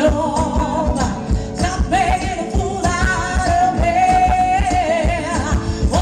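Live band playing: a woman singing into a microphone, holding one long wavering note through the middle, over electric guitar and a steady drum beat.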